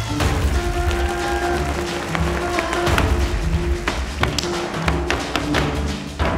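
Flamenco zapateado: boot heels and toes striking the stage floor in sharp, quick taps over recorded music with sustained notes and a low beat.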